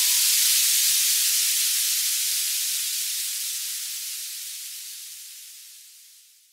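Closing white-noise effect of an electronic dance track: a high hiss left alone after the beat stops, fading out over about six seconds and thinning from the bottom as it dies away.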